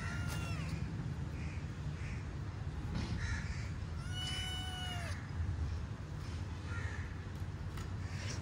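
Animal calls: a short falling call just after the start and a longer drawn-out call about halfway through that drops in pitch at its end, over a steady low hum.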